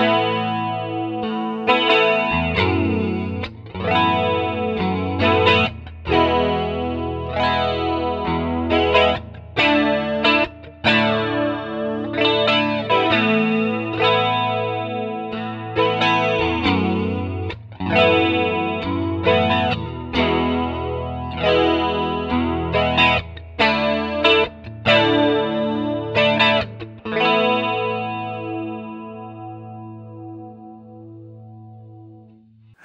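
Electric guitar chords played through a Roland Jazz Chorus 77 stereo amp, picked up by an XY coincident pair of small-diaphragm condenser mics. The chords are struck in a steady pattern every second or two and ring between strikes. The last chord fades away over the final few seconds.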